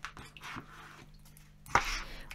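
Tarot cards being handled on a table: a few soft clicks, then a short papery rustle near the end as the deck is picked up.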